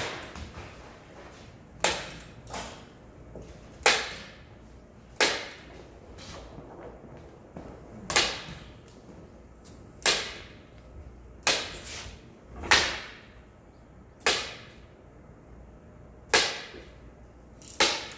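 Repeated swishing strokes on paper as hanji is smoothed down by hand onto a wooden panel. There are about a dozen strokes, one every one and a half to two seconds. Each starts sharply and fades over about half a second.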